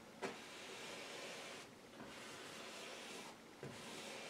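A flat 1-inch oil-painting brush dragged across the canvas: faint scratchy strokes, each about a second and a half long, with short breaks between them.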